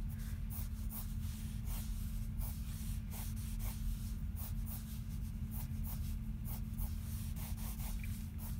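Pencil drawing short, quick lines on sketchbook paper, a scratch with each stroke at roughly two strokes a second, over a steady low hum.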